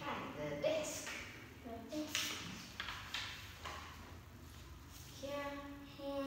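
Speech: a woman talking in short phrases with pauses between them.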